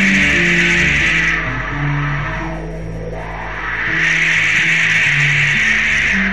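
Instrumental passage of a mid-1970s band recording, with no voice: shifting low bass notes under a high, hissing wash of sound that swells and dies away twice, dipping about two seconds in and again at the end.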